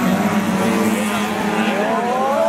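Engines of small saloon race cars running together in a steady drone as the cars race through a bend.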